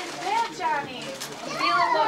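A small child's high-pitched voice rising and falling in short bursts of chatter, with other voices around it.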